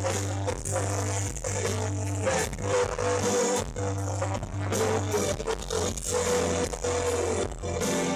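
Live pop-rock band playing a passage without vocals: held bass notes that change about once a second under regular drum hits, with electric and acoustic guitars and keyboards.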